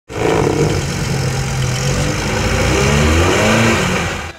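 Lada Niva's engine running hard under load as the car struggles through deep mud and water on a winch strap, the revs climbing over the last second or so.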